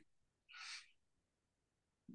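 Near silence, with one faint short breath about half a second in.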